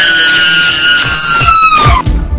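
Loud dramatic film-score music: a high held tone that slowly slides down in pitch, with low hits underneath.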